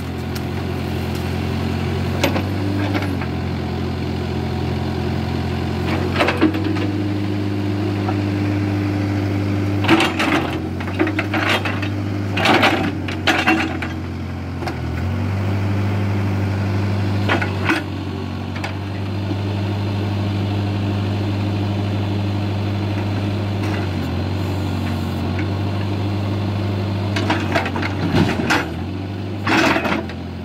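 Case backhoe loader's diesel engine running steadily, its note stepping up and down several times as the backhoe hydraulics take load. Sharp clanks and scrapes from the steel bucket and arm come in short clusters, around a third of the way in, near the middle and near the end.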